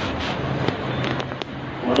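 A few sharp clicks or crackles scattered over a steady background hiss with a faint low hum.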